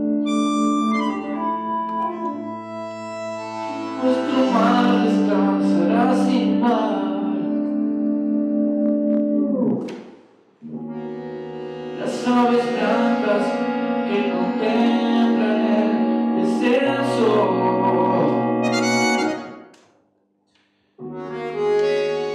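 Instrumental interlude for bandoneón and electric keyboard, with sustained bandoneón chords over the keyboard. The music breaks off to silence for a moment about ten seconds in and again near the end.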